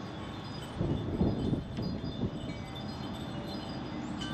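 Scattered light chime tones ringing over a low outdoor wind rumble on the microphone, with a stronger gust about a second in.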